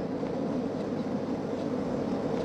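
Steady engine and road noise of an old open convertible car under way at a constant pace.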